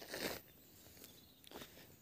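A single brief footstep scuff on a gravelly dirt track right at the start, then faint outdoor quiet.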